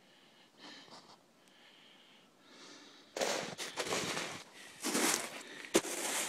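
A person breathing close to the microphone while moving through snow: faint breaths at first, then loud, rough breathing and crunching from about three seconds in.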